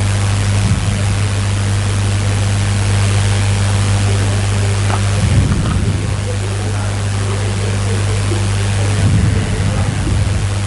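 Steady hiss with a strong, constant low electrical hum, with two brief low rumbles about five seconds in and near the end.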